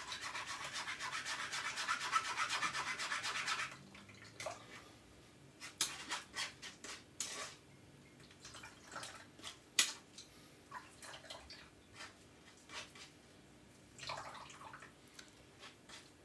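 A spoon scraping and rubbing carrot pulp against a fine stainless steel mesh strainer, pressing the juice through. Quick continuous scraping strokes for the first few seconds, then slower, scattered scrapes and light taps.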